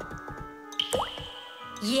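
Water dripping from a leaking tube joint, cartoon-style: a drop with a quick rising pitch about a second in, over steady background music.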